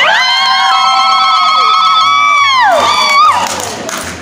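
A crowd cheering with long, high-pitched celebratory cries from several voices at once. The cries are held for about three seconds and then fall away together, followed by one shorter rising-and-falling cry.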